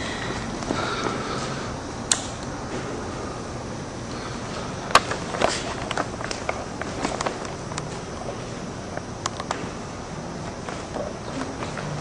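Scattered light clicks and taps over low, steady background noise, with sharper clicks about two seconds in and about five seconds in, and a run of smaller ticks after the second.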